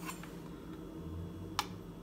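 A single short click of a kitchen knife against a plastic cutting board about one and a half seconds in, over faint room tone.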